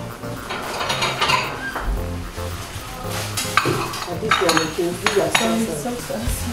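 Crockery and a metal spoon clinking and knocking against dishes several times, mostly in the second half, over background music.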